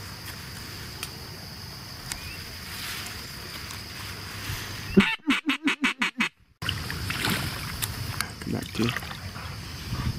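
A rapid run of about eight duck quacks, over a second long, about five seconds in, against a steady outdoor hiss.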